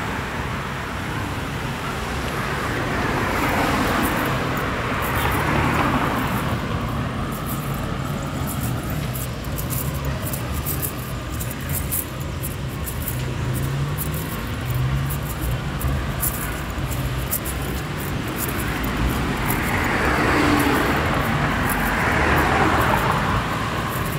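Street traffic: cars driving past close by, with a steady low engine rumble and the sound swelling twice as vehicles pass, once a few seconds in and again near the end.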